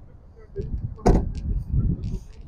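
Ford Bronco's side-hinged rear swing gate, which carries the spare tyre, swung shut and slamming closed once about a second in.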